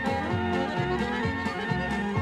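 Polka band playing an instrumental passage with no singing, a bouncing bass line under the melody at a steady dance tempo.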